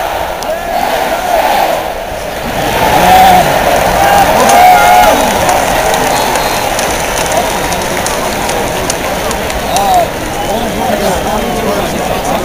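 Large stadium crowd cheering and shouting, many voices at once, swelling louder a few seconds in.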